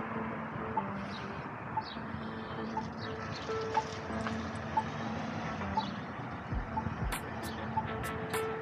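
Pedestrian crossing push-button locator tone beeping about once a second, over the steady noise of road traffic.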